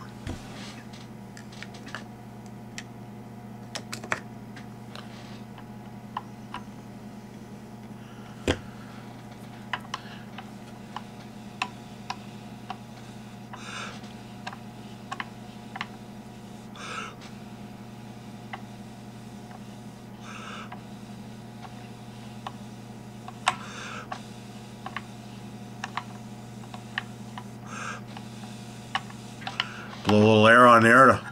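Scattered light clicks and taps from fingers handling a fly clamped in a fly-tying vise as the vise is turned, over a steady low electrical hum. A few short soft hisses come between about 13 and 24 seconds in.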